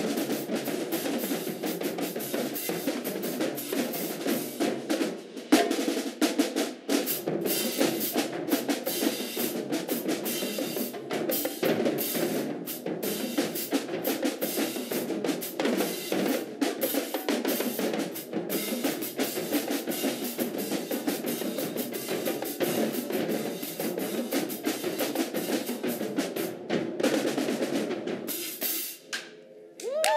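Marching band drumline playing a fast, dense cadence on snare drums and bass drums with crash cymbals. It stops abruptly near the end.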